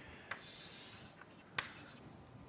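Faint writing on a lecture board: a scratchy stroke lasting about half a second, then a sharp tap about a second and a half in.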